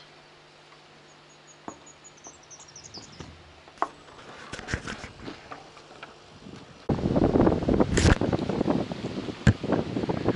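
Quiet clicks and handling of a plastic phone-holder grip, with a brief high twitter of a bird. About seven seconds in, loud outdoor wind noise on the microphone begins, with rustling and a couple of sharp knocks.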